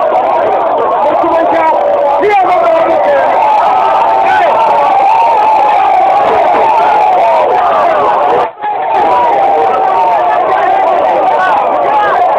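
A dense crowd of many voices shouting and calling over one another, with the sound cutting out for a moment about two-thirds of the way through.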